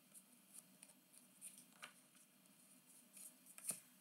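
Near silence broken by faint, short clicks of glossy chrome trading cards being slid through a stack in the hand, the loudest click near the end.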